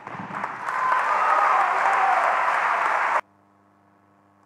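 Audience applause after a point, swelling about a second in and cut off abruptly near the end.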